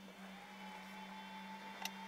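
Creality Ender 3 V2 3D printer powering up: a faint, thin steady whine comes in about half a second after it is switched on, with a single click near the end.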